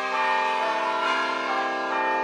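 A run of bell-like chime notes entering one after another, each ringing on so that they build into a sustained chord.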